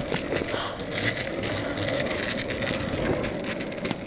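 Skateboard wheels rolling over street pavement: a steady rolling rumble with many small clicks and ticks.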